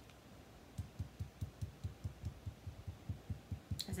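Sponge finger dauber tapping lightly through a vellum doily mask onto cardstock, a steady run of soft low thumps about five a second, starting about a second in.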